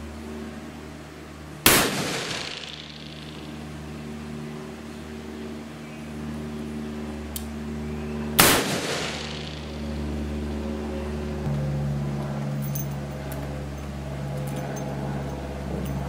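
Two shots from a stainless magnum revolver, about seven seconds apart, each a sharp crack with a short ringing tail.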